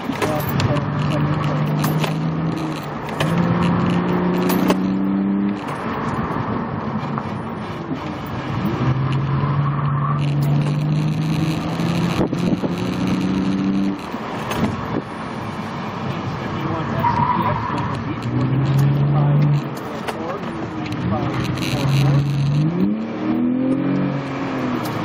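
A 2005 BMW 325i's inline-six engine heard from inside the cabin during an autocross run, its pitch climbing under acceleration and dropping back several times as the throttle is lifted and reapplied between cones.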